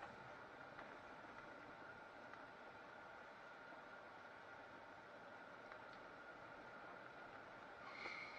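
Near silence: the faint, steady running noise of a vehicle creeping along a dirt track, heard from inside the cab, with a thin steady whine and a few light ticks.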